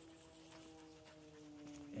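A man's quiet, drawn-out hesitation hum, a single held note that slowly falls in pitch.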